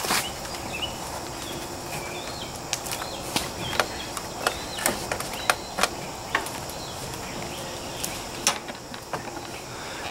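Irregular knocks and scuffs of shoes on a homemade wooden ladder screwed to a tree as someone climbs it, over a steady outdoor hiss with a few faint bird chirps.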